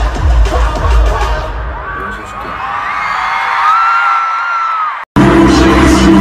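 Live pop concert music heard from among the audience, a heavy beat with a screaming crowd. About a second and a half in the beat drops out, leaving a long high held note over crowd noise; just after five seconds the sound cuts off abruptly and a different song with a steady bass line starts.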